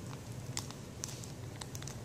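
Faint crinkling and a few soft clicks of a plastic Whirl-Pak sample bag as its wire-tabbed top is rolled down to seal the water inside.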